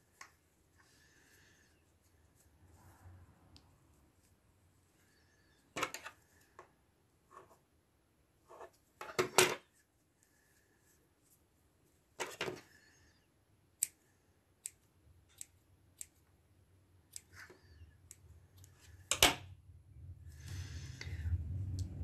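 Small scissors snipping wool yarn to trim and shape a pompom: scattered crisp snips with pauses between, the loudest about six, nine, twelve and nineteen seconds in.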